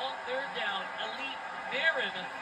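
A football broadcast playing from a television: faint, broken voices over a steady background hiss.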